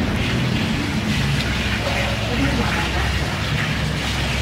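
Indistinct background talk of people at a table, over a steady low room hum.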